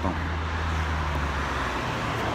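A car engine idling steadily as a low hum, with a wash of traffic noise around it.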